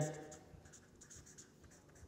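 Marker pen writing on paper: a run of faint short strokes as a few letters are written.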